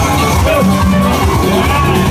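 Loud music with a steady beat and a repeating bass line.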